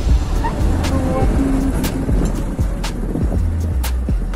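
Small motor scooter running as it is ridden along a road, with a steady, heavy low rumble. Background music plays over it.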